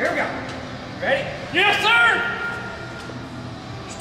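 A man's voice: two short wordless vocal calls, about one and two seconds in, the second held briefly on one pitch.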